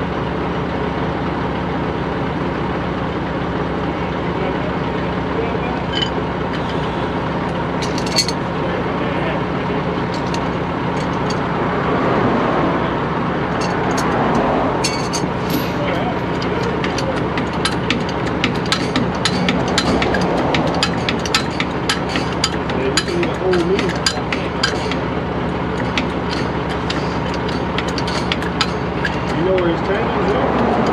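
Truck engine idling steadily, with a run of quick sharp clicks and metallic clinks through the middle as a hydraulic bottle jack under a trailer axle is worked with its handle.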